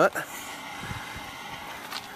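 Faint steady background noise with no distinct events, just after the end of a man's spoken sentence.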